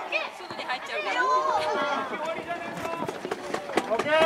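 Several voices calling and shouting across an open pitch during a children's soccer game, some of them high-pitched, with a few short knocks among them.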